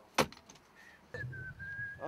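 A sharp click shortly after the start, then a thin, held whistled note from about a second in over a low rumble.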